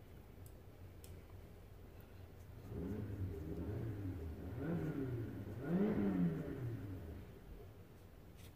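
A vehicle engine accelerating, its pitch rising and falling in three swells from about three seconds in, loudest near the end before it fades away.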